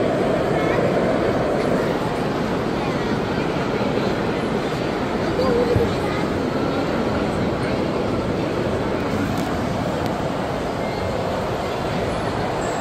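Steady hum of indoor background noise with indistinct voices talking, none of them close or clear.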